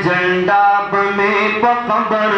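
A man singing a Pashto naat in long, held notes that step and slide from pitch to pitch.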